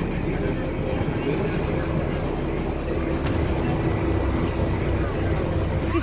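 Steady low rumble of outdoor street noise with faint, indistinct voices.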